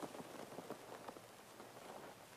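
Faint scratching and small ticks of a felt-tip marker writing on a glass board.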